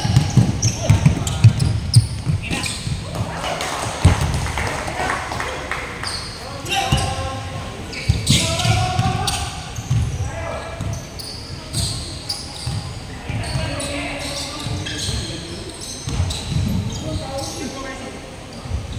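A basketball dribbled on a hardwood gym floor, with a quick run of thuds in the first two seconds and scattered bounces after, echoing in a large hall. Players' voices call out over it.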